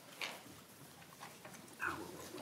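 Quiet hearing-room tone with two brief, soft sounds, one shortly after the start and one near the end.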